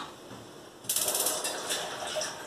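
Gas stove burner's spark igniter clicking rapidly for about half a second, lighting the burner.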